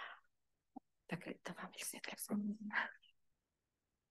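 A woman's quiet, half-whispered speech, starting after a short breath and stopping about three seconds in.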